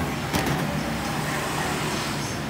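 Steady rumble of street traffic, with one brief sharp click about a third of a second in.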